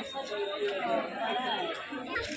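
Indistinct chatter of several people talking in a crowded market stall.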